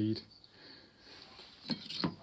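The end of a man's spoken word, then faint rustling with a few light ticks near the end as a MIG welding torch and its cable are set down on a wooden bench.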